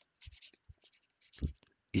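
Pen scratching on paper in several short quick strokes as a signature is written, with a short low sound about a second and a half in.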